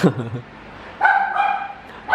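A dog whining: a short falling cry at the start, then one high, held whine about a second in.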